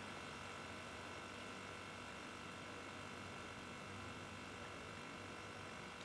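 Salvaged refrigerator compressor running as a faint, steady hum with a few constant tones, pumping air into the tank at about 8 bar, just short of the pressure-switch cut-off.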